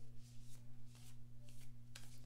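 A deck of round oracle cards being shuffled by hand: a run of soft strokes, about three a second. A low steady hum runs underneath.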